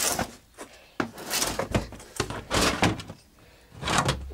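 Rummaging in a metal horse-feed bin: a string of sudden scrapes, rustles and knocks as the feed and bin are handled.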